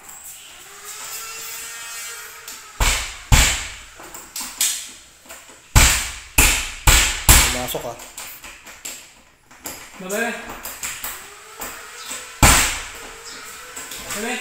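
Sharp metal clicks and knocks from a cylindrical doorknob lockset on a wooden door as the knob is turned and the latch bolt snaps in and out, testing the newly fitted lock. The clicks come in clusters about three and six seconds in, with one more strong knock near the end.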